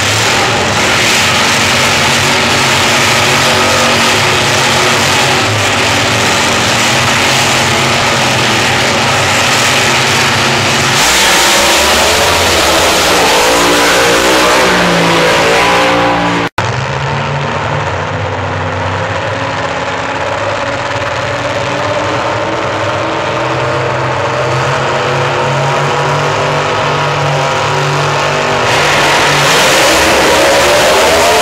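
Drag-racing car engines running loud, with revving that rises and wavers around the middle. The sound drops out for an instant about halfway through, then carries on loud and steady.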